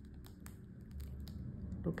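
Silicone mold being peeled off a freshly cured epoxy resin dish: a faint sticky peeling sound with a few small clicks.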